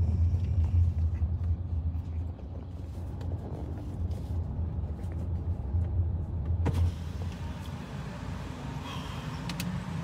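Low, steady rumble of a car heard from inside its cabin, easing a little after the first couple of seconds. A single sharp click sounds about two-thirds of the way through.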